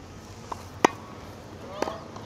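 Tennis ball struck by rackets during a volley drill: one sharp, loud pop a little under a second in, then a softer hit near the end.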